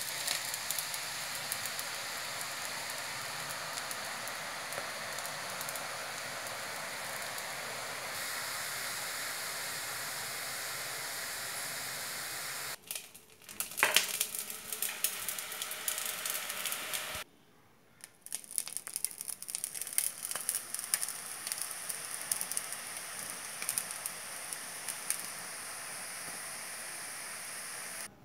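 Besan sev dough deep-frying in hot oil in a wok: a steady, even sizzle. The sound breaks off briefly twice, near the middle, and after that it turns more crackly, with scattered sharp pops.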